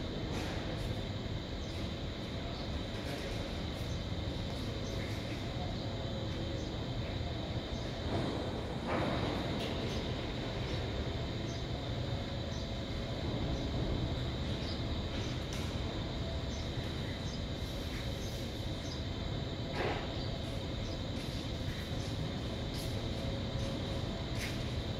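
Steady mechanical rumble and hum with a faint high tone, broken by a few knocks about eight, nine and twenty seconds in.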